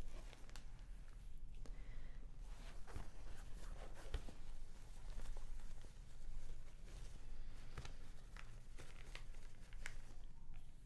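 Microfiber cloth and eyeglasses being handled: faint soft rustling with scattered light clicks, swelling briefly about halfway through.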